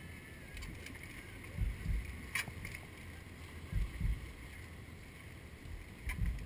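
Trials bike hopping across large seawall rocks. The tyres land with low thuds in pairs, once about a second and a half in and again near four seconds, with a single sharp click between, over a steady background rush.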